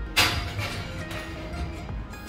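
Background music, with one sharp clink about a fifth of a second in as a glass baking dish is set onto the oven's metal rack.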